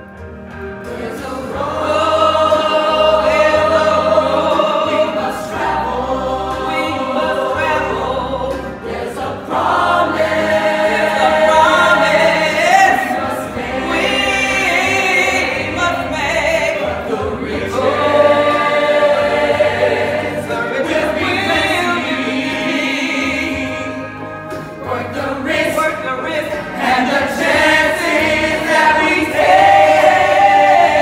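A stage chorus of young voices singing a gospel-style show tune in long held notes with a female lead, over musical accompaniment, swelling louder near the end.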